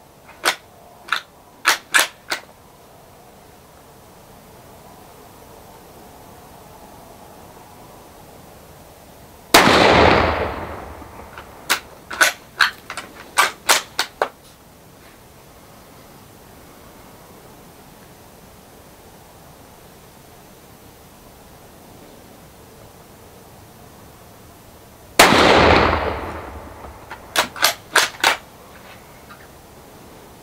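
Two shots from a scoped Savage bolt-action rifle in .222, about fifteen seconds apart, each trailing off in a short echo. Each shot is followed within a couple of seconds by a quick run of sharp metallic clicks as the bolt is worked, and a few similar clicks come in the first couple of seconds.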